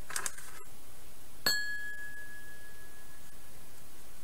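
A single bright ding, like a small bell or chime struck once about one and a half seconds in, ringing out with a clear tone that fades over about two seconds. It is preceded by a brief soft noise at the start, with a steady faint hiss underneath.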